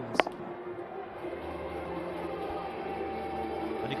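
A single sharp crack of a cricket bat striking the ball, about a fifth of a second in, followed by steady stadium background noise.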